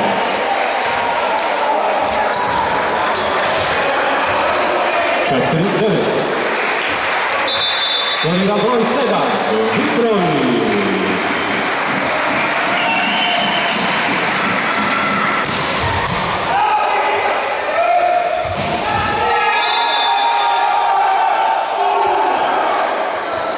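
Volleyball match in a large echoing sports hall: voices shouting and calling, sharp ball strikes, and several short high whistle tones from the referee.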